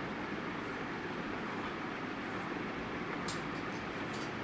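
Chalk being drawn across a blackboard in a few short scratchy strokes, about one a second, as the lines of a hexagon are drawn. A steady background noise runs underneath.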